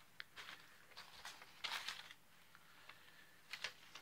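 Faint rustling of handled paper slips: a few short, soft rustles with quiet room tone between them.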